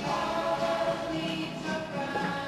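Recorded music of a choir singing long, held chords, the notes changing about half a second in and again near the end.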